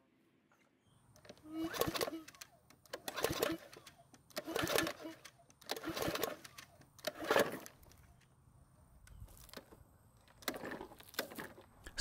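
Repeated short tugs on a PowerSmart lawn mower's recoil starter rope, about seven in all, each a brief rasp that stops short because the engine has jammed and will not turn over.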